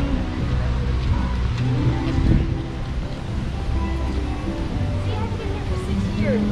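Theme-park background music with scattered talk from passers-by over a steady low rumble.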